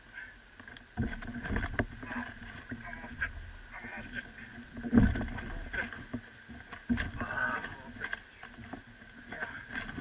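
Thumps and knocks against a small boat's hull and deck as a huge wels catfish is hauled in over the side and laid down on the deck. The heaviest thud comes about five seconds in, with others about a second in and near seven seconds.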